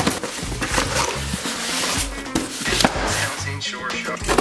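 Background music with a steady bass beat.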